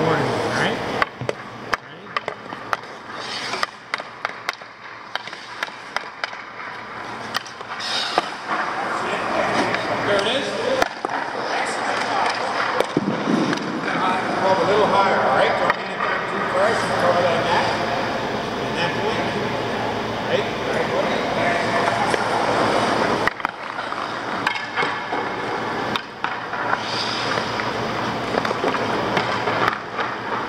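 Hockey skates scraping and carving on rink ice as players move around the net, with sharp clicks and knocks of stick and puck, most of them in the first few seconds.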